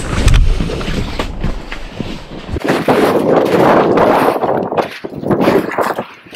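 Wind buffeting the microphone, with the ice shelter's fabric rustling as someone pushes out through its door. A deep rumble for the first couple of seconds gives way to a steadier rushing noise.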